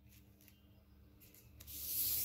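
A hand rubbing over paper, pressing a freshly glued paper strip flat; a faint rubbing that grows into a louder swish near the end.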